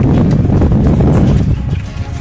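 Footsteps on a loose, stony mountain path going downhill, with a heavy low rumble on the microphone.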